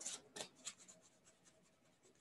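Near silence, with a few faint rustles and taps in the first second from a deck of angel cards being handled in the hands.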